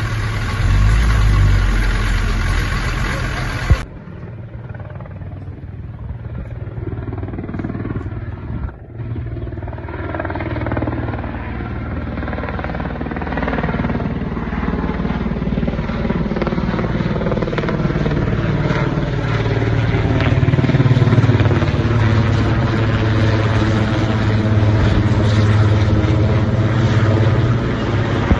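A heavy truck engine rumbling close by for about four seconds. Then a Cougar twin-turbine military helicopter flies overhead with a firefighting water bucket slung beneath it. Its rotor and turbine sound is steady and grows louder as it comes over.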